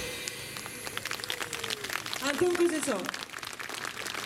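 Audience clapping after a jazz number ends, while the band's last held note dies away. About two seconds in, a woman says a few words through the stage PA.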